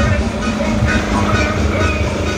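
Loud music with heavy bass played through a miniature horeg sound system, a rig of stacked power amplifiers and speaker cabinets.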